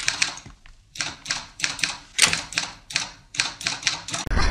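Typewriter typing sound effect: an irregular run of sharp key clacks, several a second, each with a short ringing tail, with a brief pause after the first few strokes.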